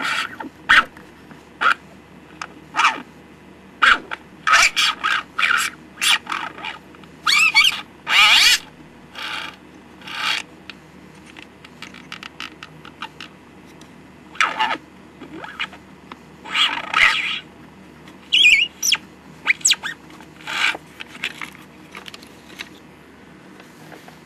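See 'n Say toy's small plastic record turned by hand under its needle and diaphragm, playing uneven snatches of the recorded animal sounds and voice. The snatches come as short bursts that start and stop with each push of the record, some wavering in pitch, and die away near the end.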